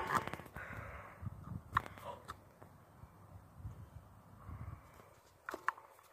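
Handling noise from a phone held close to the body: a sharp click at the start, then low, irregular rumbling thumps and a few faint clicks.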